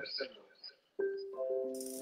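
A few steady musical tones start about halfway through: a single held note, then several notes sounding together as a chord until the end.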